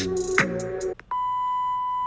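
An electronic music beat with drum hits and gliding bass notes cuts off about halfway. After a brief gap, a steady high-pitched test-tone beep begins and holds.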